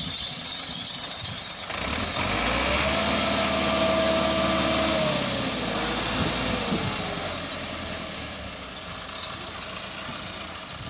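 Massey Ferguson 385 tractor's diesel engine revving hard under load, pulling a trolley whose tractor is dug into soft sand. The revs climb about two seconds in, hold, then fall away from about five seconds in, and the engine eases off toward the end.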